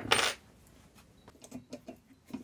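A small steel open-end spanner set down on the workbench with one sharp metallic clatter that rings briefly. It is followed by a few light metal clicks as blowtorch parts and tools are handled.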